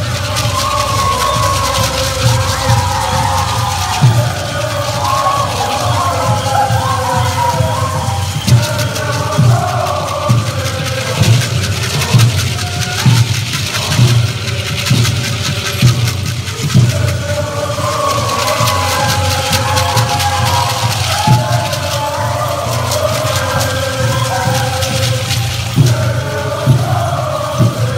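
Pueblo buffalo dance song: a chorus of singers chanting together over a steady drum beat.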